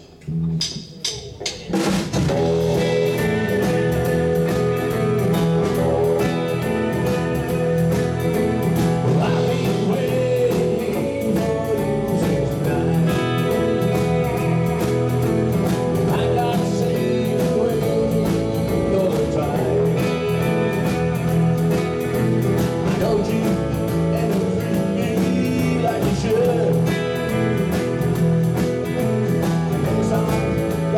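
A few sharp clicks, then about two seconds in a live instrumental rock band comes in: two Fender Stratocaster electric guitars, electric bass, acoustic guitar and drum kit, playing on at a steady beat.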